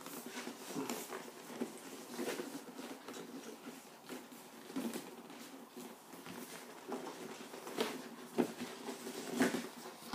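Cardboard collector's box being worked out of its tight outer sleeve: a continuous dry rubbing and scraping of card against card, with scattered small taps and knocks and a few louder ones in the last three seconds.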